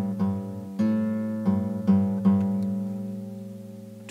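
Acoustic guitar: one fretted note plucked about six times in the first two and a half seconds, then left to ring and fade. The note rings clear with no fret buzz, the string pressed just hard enough.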